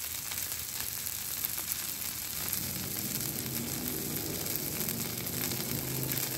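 Smash burger patties topped with cheese sizzling on a flat-top griddle: a steady frying hiss from fat on the steel, which is still hot after the burners were shut off.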